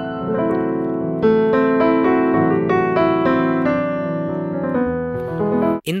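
Digital piano playing sustained chords in E major with single notes moving over them, a fresh chord struck about a second in. The playing cuts off abruptly shortly before the end.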